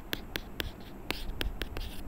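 Stylus tapping and scratching on a tablet's writing surface as numbers are handwritten: a series of short, sharp clicks, roughly four a second.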